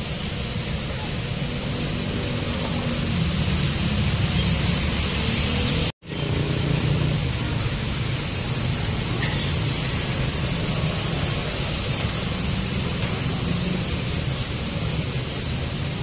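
Steady roadside traffic noise, a constant low hum and rush of vehicles, which cuts out for an instant about six seconds in.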